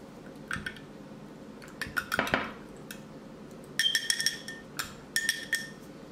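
Gold grill pieces clinking and tapping against a glass mirror plate in a few short bursts of taps, some leaving a brief ring.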